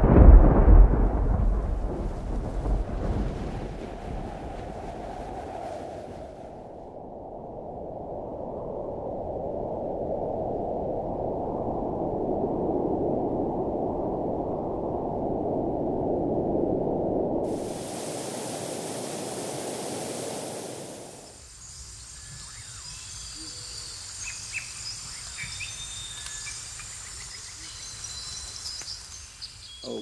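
Thunder as an intro sound effect: a loud crash right at the start that rolls away over several seconds. A long rushing noise follows and stops suddenly about two-thirds of the way through, leaving quieter hiss with faint high tones.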